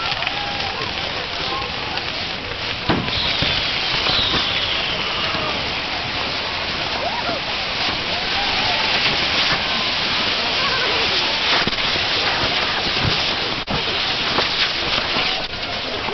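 Fireworks showering sparks: a steady, dense hiss and crackle, with a falling whistle about three seconds in and a few sharp bangs, the loudest about three seconds in and near the thirteenth second. People shout throughout.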